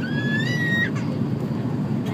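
Steady low roar of an airliner cabin, the jet engines and airflow heard from a window seat over the wing. In the first second a brief high squeal rises and holds, then stops.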